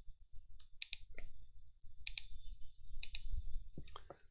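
Light clicks from a computer mouse, about a dozen at uneven intervals, several in quick pairs.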